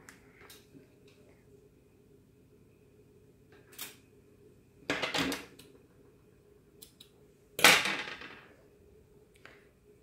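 Scissors and suede lace being handled on a glass tabletop. There are faint clicks, a short clatter about five seconds in, and a louder sharp knock with a brief scraping tail near eight seconds.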